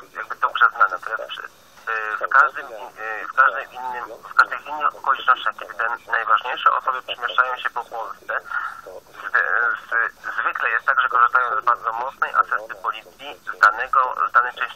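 Only speech: a voice talking without pause, thin-sounding with little bass, like talk radio.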